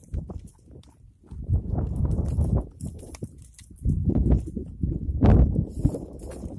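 Goats browsing a dry, thorny shrub close by: rustling and crackling of branches as they tug and chew, in two louder stretches, the first about a second and a half in and the second from about four seconds on.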